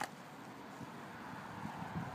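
Faint steady outdoor background noise, a low even rumble and hiss with some wind on the microphone.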